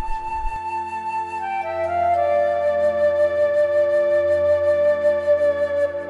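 Slow background film-score music: a melody of long held notes over sustained chords, stepping down in pitch about two seconds in.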